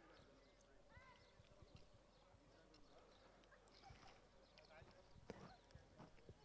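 Near silence, with faint scattered hoof sounds of polo ponies milling on turf and a few faint distant voices.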